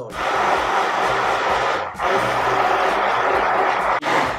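Hand-held immersion blender running in a bowl of lemon curd, a loud steady whirr that cuts out briefly about two seconds in and then starts again. Background music plays underneath.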